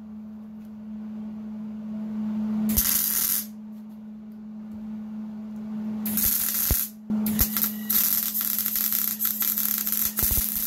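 MIG welder arc sizzling and crackling as a bead is laid around the port fitting on a steel power-steering rack housing, sealing a leaking, poorly formed factory weld. There is a short burst about three seconds in, another at about six seconds, then a longer run from about seven seconds on.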